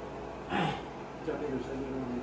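A man speaking, with a short, loud breathy exclamation, falling in pitch, about half a second in.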